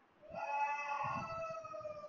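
Keys being typed on a computer keyboard, under a louder long high-pitched call whose pitch falls slowly over about two seconds.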